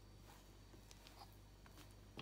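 Near silence, with faint scraping and a few soft ticks from a spatula working whipped chocolate cream around a bowl.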